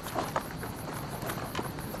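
Crickets chirping steadily in the night, with a few soft clicks and rustles of soldiers' gear as they crouch.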